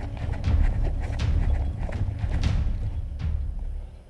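Quick footsteps crunching on dry, loose vineyard soil, with vine leaves brushing past and a heavy rumble of movement and wind on a body-worn camera microphone. The sound drops away near the end.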